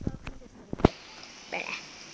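Two sharp knocks, one right at the start and one a little under a second later: handling noise on a phone's microphone as it is carried while recording. A faint steady hiss follows the second knock.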